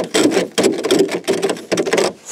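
Plastic ice scraper scraping frost off a car hood covered in paint protection film, in quick repeated strokes.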